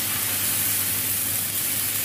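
Milk being poured into a hot frying pan of ground chana dal fried in desi ghee, hissing and sizzling steadily as it hits the hot fat.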